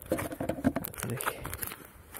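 A sealed foil-laminate sachet crinkling as it is turned over in the hands, with many small irregular crackles.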